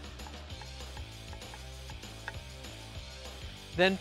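Knife chopping fresh chives on a wooden cutting board: a quick, even run of blade taps on the board that stops near the end.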